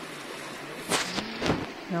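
Steady rush of a stream flowing over rocks, with two short loud bursts of noise about a second in and again half a second later.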